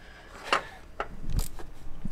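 A ratchet and socket being handled and fitted onto the thermostat housing cover bolts in an engine bay: a few separate clicks and a knock about halfway through, with rubbing and scraping that grows louder toward the end.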